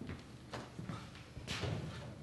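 Footsteps on a wooden stage floor: a few separate, spaced steps as people walk across the boards.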